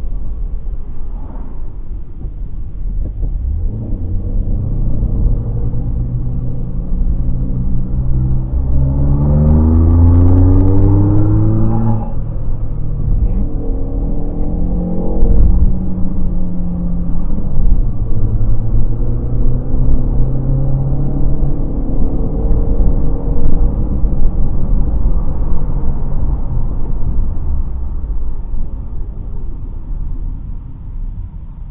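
Car engine running under load and accelerating, its pitch rising several times and dropping suddenly at a gear change about twelve seconds in, over a steady low rumble of road and engine.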